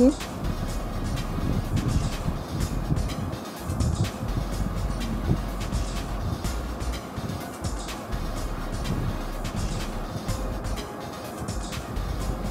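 Beaten eggs and boiled noodles being stirred together in a glass bowl: a steady wet stirring with many faint clicks, under background music.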